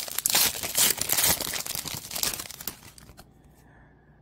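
A baseball card pack's wrapper being torn open and crinkled by hand, a dense crackling that dies away about three seconds in.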